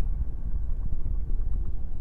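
A steady deep rumble, a low drone with no clear tune or beat.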